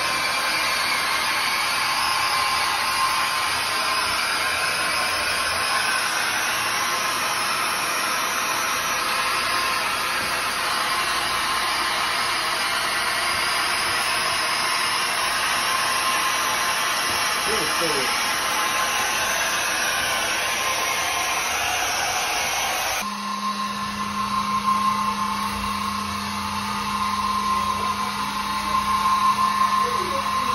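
Floor scrubbing machine running over wet tile, a steady motor hum and whirr with the pad scrubbing the floor. About three-quarters of the way through the sound changes abruptly to a lower, steadier hum.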